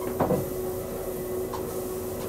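Motorized treadmill running with a steady hum, footsteps on the moving belt, and a short, sharper sound about a quarter second in.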